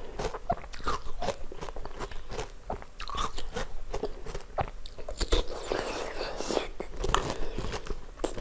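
A frozen ice ball on a stick being bitten and crunched close to the microphone, with many sharp, irregular cracks and chewing crunches.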